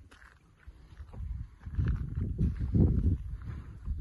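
Wind buffeting the microphone: a low, uneven rumble that rises about a second and a half in and comes and goes in gusts, over a hiker's footsteps on a rocky trail.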